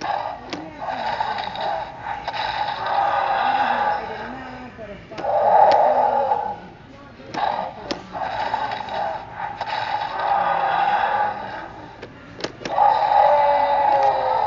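Mattel Jurassic World Roarivores Triceratops toy playing its electronic roar sounds through its small built-in speaker, set off by pressing the head button. About five roars, each a second or more long, come one after another with short breaks, in a roar like a Tyrannosaurus.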